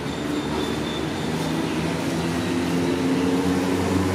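An engine running with a steady, multi-toned hum that slowly grows louder.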